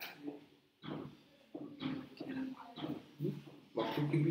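A person speaking, in short broken phrases.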